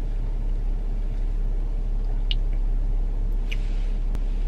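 Steady low rumble of a car's idling engine heard inside the cabin, with a couple of faint small clicks.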